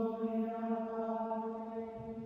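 Chanting holding one long steady note, as in monastic plainchant.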